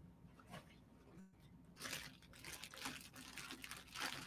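Near silence, then faint crinkling and rustling of jewelry packaging being handled, beginning about two seconds in.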